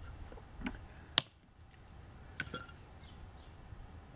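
Hard lumps of bituminous coal clinking as they are handled and knocked with a small hatchet on a wooden chopping block. There are a few sharp clinks: the sharpest comes about a second in, and a close pair with a brief ring comes past the middle.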